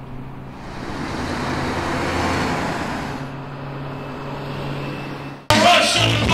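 Street traffic noise over a steady low engine hum, with a vehicle passing that swells and fades over a couple of seconds. Near the end it cuts abruptly to loud live hip-hop music.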